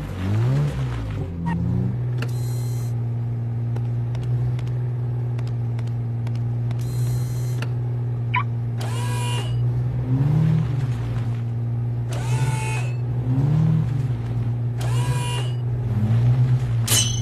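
Sports car running with a steady low hum. The pitch swells up and down a few times in the first two seconds, and again briefly later on.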